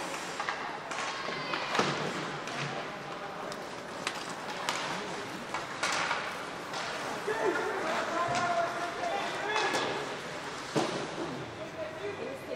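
Ice hockey play in a large rink: sharp knocks of sticks and puck, some against the boards, over a steady echoing hubbub. Voices call out across the ice in the middle of the stretch.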